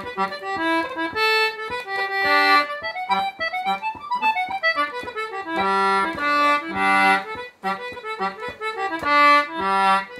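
Concertina playing an Irish reel: a fast melody of short notes over a low note pumped out in rhythm beneath it, with a brief break about three-quarters of the way through.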